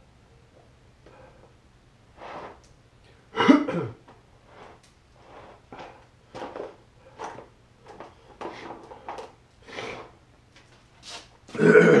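A man burping and clearing his throat in a string of short bursts, one every half second to a second, with a louder one about three and a half seconds in and a loud throat-clear at the end. It is his body's reaction to an extremely hot chili-extract lollipop that has upset his stomach.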